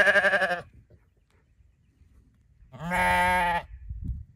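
Sheep bleating twice: a quavering bleat at the start, then a steadier, held bleat lasting about a second, about three seconds in.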